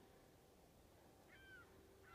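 Near silence, broken once, about a second and a half in, by a single short, faint seagull call.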